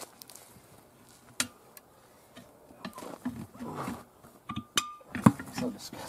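Steel tire irons clinking and scraping against a steel wheel rim as a tire bead is pried off by hand. There is a sharp clink about a second and a half in, a brief ringing clink shortly before the end, and a louder clank near the end.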